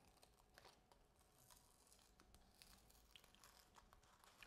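Near silence, with faint crinkles and ticks of masking paper transfer tape being peeled off a vinyl decal on a ceramic mug.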